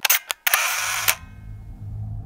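Camera shutter sound: two sharp clicks, then a half-second burst of noise that cuts off abruptly about a second in.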